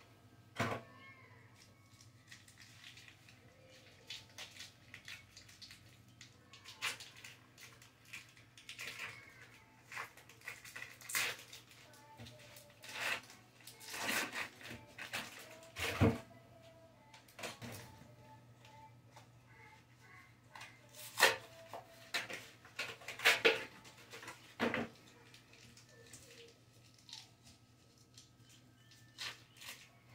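Foil wrappers of cream cheese blocks crinkling and crackling as they are peeled off, with scattered light knocks and a heavier thump about midway as a block drops into the bowl. Now and then a cat meows.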